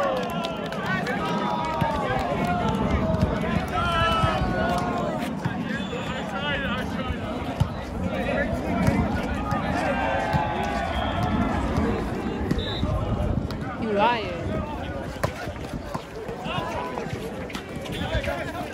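Players and spectators shouting and calling out during a volleyball rally, many voices overlapping, with a few sharp smacks of the ball being hit.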